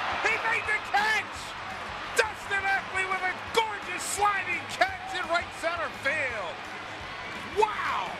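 Mostly speech: a man's voice from the game broadcast, in short excited phrases over steady ballpark crowd noise, with a couple of sharp knocks in the first seconds.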